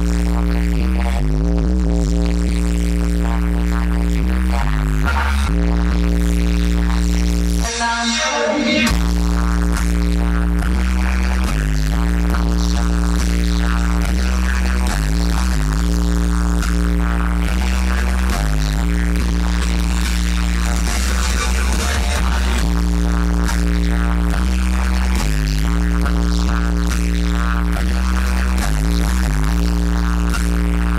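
Loud live electronic music through a concert PA, recorded from within the audience, with a repeating line of long, sustained bass notes. About eight seconds in, the bass cuts out for about a second under a noisy sweep, then returns.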